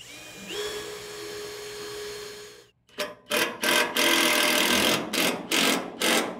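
Cordless drill spinning up and boring a pilot hole into a steel container floor channel with a 15/64-inch bit: a steady whine that rises once near the start and holds for over two seconds. After a short gap comes a louder, harsher stretch of several short bursts as a quarter-inch self-tapping screw is driven in until snug.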